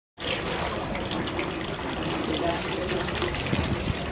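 Water pouring from a bamboo spout into the stone basin of a Shinto shrine purification fountain, with water poured from bamboo ladles over visitors' hands; a steady splashing.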